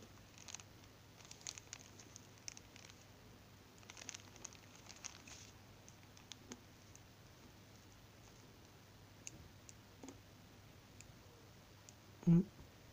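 Faint handling noise: scattered small clicks and plastic crinkles as a diode is fitted into crocodile-clip test leads on a plastic sheet. The clicks are busiest in the first half and grow sparse later.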